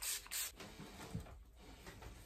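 Faint handling noises: soft rustling with a small burst near the start and a light click about a second in.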